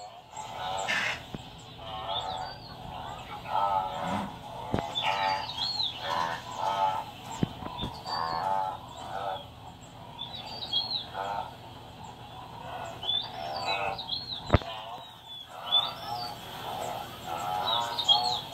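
Nature documentary soundtrack from a TV: birds chirping throughout over a run of short, wavering animal calls, with a few sharp clicks.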